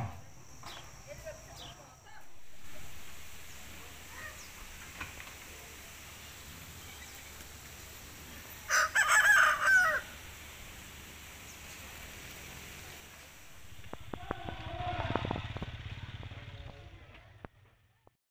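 A rooster crows once, a little over a second long, about halfway through, over a faint steady background.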